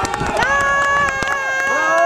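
Spectators shouting long, drawn-out cheers, several voices each held at a steady pitch for about a second and a half, with a few sharp knocks over them.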